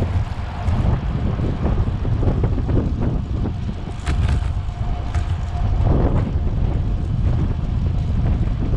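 Wind buffeting the microphone of a camera on a moving bicycle, a steady low rumble, with a few short clicks or rattles about four seconds in and a faint steady tone from about four to six seconds.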